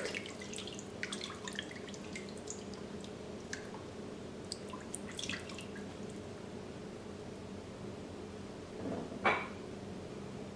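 A silicone spatula stirring a watery tomato sofrito in a stainless steel pressure-cooker inner pot makes faint liquid splashes and drips, scattered through the first half or so. A brief, louder sound comes near the end.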